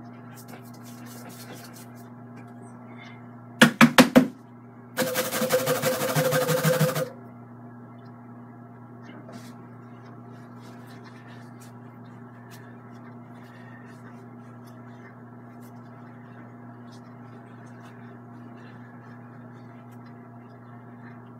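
Four sharp knocks in quick succession about four seconds in, then a loud rattling clatter lasting about two seconds, over a steady low electrical hum.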